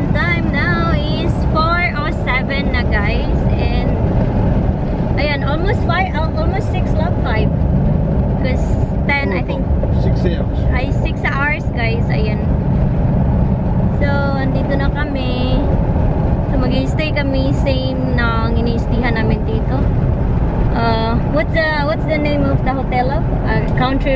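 Steady road and engine rumble inside a moving car's cabin, with a woman talking over it.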